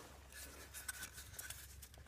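Paintbrush being worked in an open metal can of paint and wiped against the rim: faint, quick scratchy strokes.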